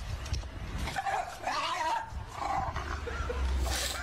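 A dog making drawn-out vocal sounds that waver in pitch, over a steady low hum.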